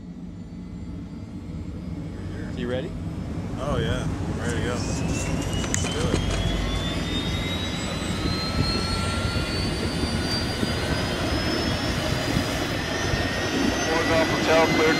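Airbus helicopter's turbine engine starting up: a whine that climbs slowly and steadily in pitch as the engine spools up, growing louder over the first few seconds, with brief voices about four seconds in.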